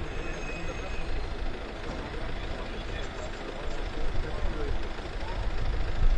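Street noise: a steady low engine rumble with indistinct voices talking.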